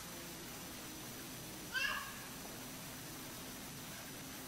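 Faint room tone with a single short, high-pitched squeak about two seconds in.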